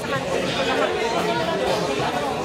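Steady background chatter of many people talking at once in a busy billiard hall, with no single voice standing out.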